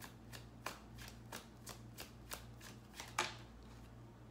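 A deck of tarot cards being shuffled by hand: short, faint card slaps at an even pace of about three a second, with one louder slap a little after three seconds in.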